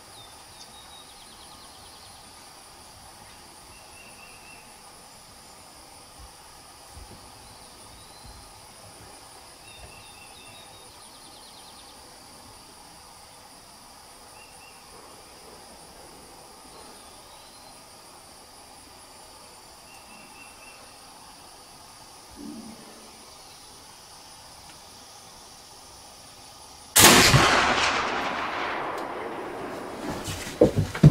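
A single loud shot from a Kibler Woodsrunner flintlock muzzleloading rifle loaded with 90 grains of Goex black powder, near the end, its boom trailing off over about three seconds. Before it, a steady high insect buzz with a few faint chirps.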